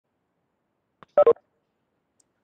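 Two short electronic beeps in quick succession about a second in, each a brief two-tone blip, like keypad or notification tones on a video call.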